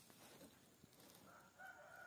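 A rooster crowing faintly: one long, held call that begins a little over a second in.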